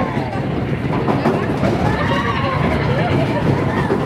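Big Thunder Mountain Railroad mine-train roller coaster running fast along its track, with a loud, steady rumble of wheels on rails. Riders' voices rise and fall over it.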